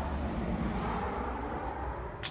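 A passing road vehicle, a steady low rumble with a faint falling tone that slowly fades.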